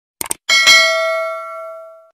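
Subscribe-button sound effect: a quick mouse click, then a bright notification bell chime struck twice in quick succession that rings on and fades out near the end.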